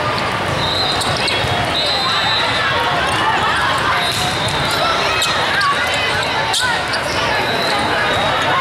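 Din of many overlapping voices in a large indoor hall, with the sharp smacks of volleyballs being hit, the clearest about six and a half seconds in.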